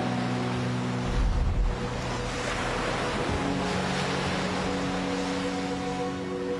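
Ocean surf breaking and churning over rocks, with a deeper heavy surge of a wave about a second in. Soft sustained ambient music plays underneath.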